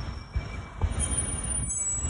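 Road traffic rumbling on a city street, with thin high-pitched squeals in the second half.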